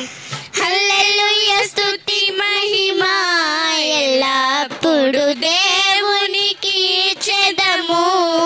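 Two girls singing a Christian worship song together into microphones, the melody wavering and sustained. A large hand drum is struck with a few scattered beats under the voices.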